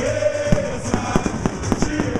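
Samba music with singing: a held sung note at the start, then a string of sharp cracking hits from about half a second in until near the end.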